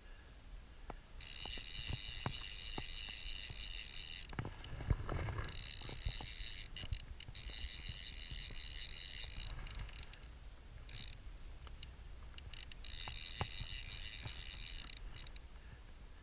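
Fly reel's click-and-pawl drag buzzing as line is pulled off it, in three runs of a few seconds each. Sharp single clicks and a dull knock fall between the runs.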